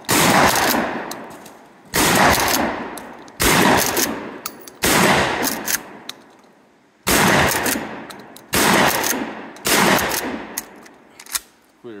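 12-gauge pump-action shotgun firing slugs: seven shots in quick succession, about one and a half to two seconds apart, each with a long fading tail. Short clicks of the action being worked fall between some of the shots.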